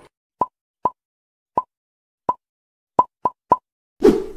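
Seven short cartoon pop sound effects, spaced unevenly, the last three coming quickly one after another.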